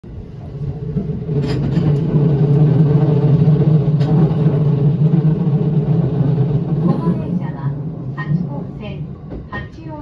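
Steady low rumble of a Hachikō Line commuter train running, heard from inside the carriage, building over the first couple of seconds as it pulls away past a station, with a couple of sharp clicks. The train's onboard announcement voice begins near the end.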